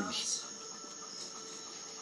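A dog's collar tags jingle briefly at the start as it turns its head. After that the room is quiet apart from a faint, steady high-pitched whine.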